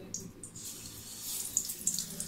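Besan-batter-coated potato vada going into hot oil in a kadhai and deep-frying: a hissing sizzle with sharp crackles, growing louder about a second in.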